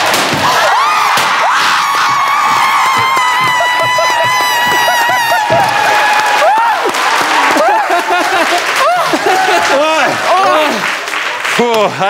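Several people whooping and shouting over one another, with hand clapping and background music.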